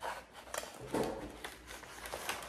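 Metal kitchen tongs handling live crabs in a takeout tray: a few short scrapes and rustles as the crabs are shifted around.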